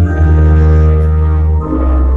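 Organ playing slow, held chords over a deep, sustained bass, moving to a new chord near the start and again near the end.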